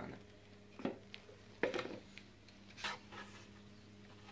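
Vegetable peeler scraping the skin off an apple in three short, soft strokes about a second apart, over a faint steady hum.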